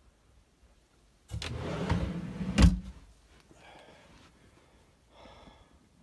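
Metal ball-bearing drawer runner sliding along its rail for about a second and a half, ending in a sharp clack as it hits its stop.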